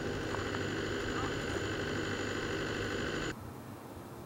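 Tractor engine running steadily in the vineyard, heard at a distance. The sound cuts off abruptly about three seconds in, leaving a faint outdoor hiss.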